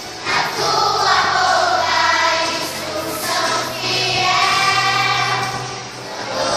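A group of young children singing a song together, in held phrases.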